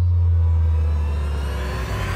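A deep, steady rumbling boom from a dramatic sound effect in a TV soundtrack, with a hissing whoosh rising under it toward the end.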